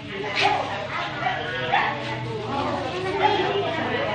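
A dog barking as it begs for food on its hind legs, amid children's chatter.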